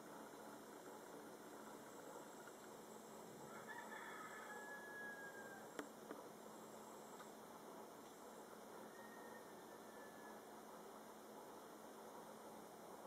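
Near silence: faint background hiss, with one faint distant call lasting about a second and a half about four seconds in, and a single soft click shortly after.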